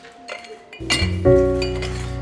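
Glass tumblers clinking lightly as they are set down and stacked on a table. Music with sustained notes and a deep bass comes in under a second in and is louder than the clinks.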